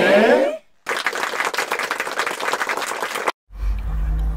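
Applause, a dense patter of many hands clapping, lasting about two and a half seconds and cutting off abruptly, like an edited-in sound effect. A brief loud rising pitched sound comes just before it, at the start.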